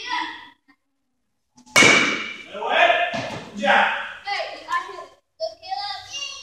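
A single sharp crack about two seconds in: a youth baseball bat hitting a ball. Children's voices follow it.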